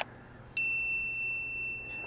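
A short click, then a single bright bell ding about half a second later that rings on and slowly fades: the click-and-bell sound effect of a subscribe-button animation.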